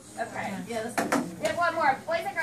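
Young children's voices chattering, with a few sharp clicks between about half a second and a second in.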